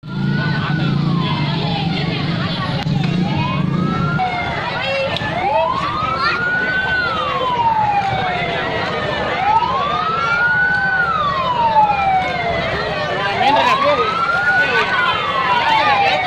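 An emergency vehicle's siren wailing, its pitch rising and falling in slow cycles of about four seconds, over the hubbub of a crowd of onlookers. A low hum sits under it for the first four seconds.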